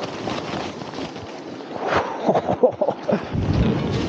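A rushing, wind-like noise on the camera microphone as shaken snow pours down from a loaded tree branch over the camera and jacket. Around two seconds in come a few short vocal sounds, and near the end a deeper rumble takes over.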